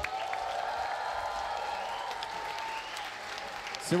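A large audience applauding, with a steady tone held beneath the clapping that stops just before speech resumes.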